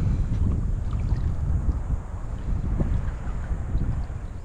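Wind buffeting the microphone: a steady, uneven low rumble.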